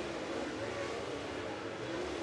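Dirt late model race cars running around the track, heard as a faint, steady engine drone.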